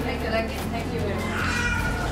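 Indistinct voices over background music, with a high gliding voice about halfway through.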